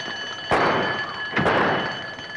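Two loud sudden bangs about a second apart, each dying away over about half a second, over an alarm bell ringing steadily.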